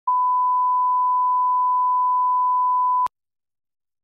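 A steady 1 kHz line-up test tone, played with SMPTE colour bars at the head of the tape. It holds one pure pitch for about three seconds, then cuts off suddenly with a click.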